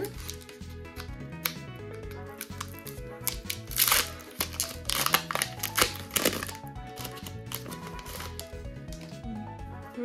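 Foil booster-pack wrapper crinkling and tearing as it is pulled open by hand, in several short bursts through the middle, over background music.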